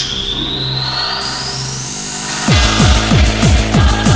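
Hard techno DJ mix: a build-up with a rising sweep over swelling noise. About two and a half seconds in, a fast, heavy kick drum drops in, each kick falling in pitch.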